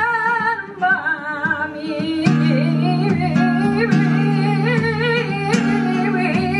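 A woman singing flamenco bulerías in long melismatic lines with a wavering vibrato, over acoustic guitar chords that fill out about two seconds in. Sharp hand claps (palmas) mark the rhythm.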